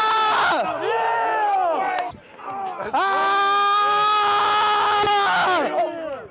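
Football players yelling long, drawn-out hollers on the practice sideline: two sustained held calls with shorter rising and falling shouts between them.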